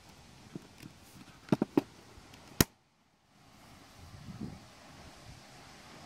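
Circuit-breaker toggle clicking as it is switched on, sending current through a thin test wire: a quick run of three clicks, then one sharp click.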